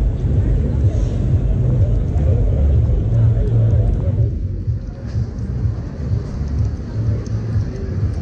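Wind buffeting the camera microphone in an uneven low rumble, over the faint chatter of a crowd of passers-by.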